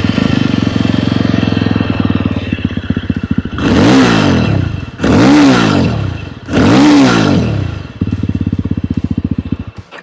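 Yezdi Roadster's 334 cc single-cylinder engine, with its twin exhaust, running at idle just after starting, then blipped up three times, each rev rising and falling, before settling back to idle and cutting off just before the end. The exhaust note is grunty.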